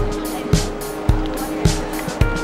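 Background music with a steady beat of just under two beats a second over held tones.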